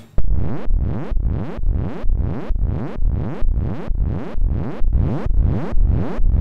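Serge modular synthesizer playing a repeating pattern of notes, about three a second, through an Extended ADSR module used as a waveshaper. Each note starts loud, fades, and slides upward in pitch.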